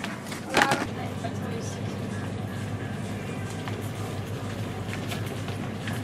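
Supermarket background: a steady low hum with faint general noise, a short voice sound about half a second in, and faint music.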